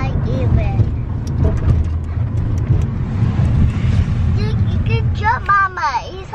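Steady low rumble of a car heard from inside the cabin, with a few small clicks and a voice briefly near the end.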